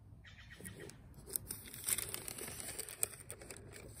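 Tracing paper rustling and crinkling faintly as it is turned over a paper worksheet, with a few soft clicks.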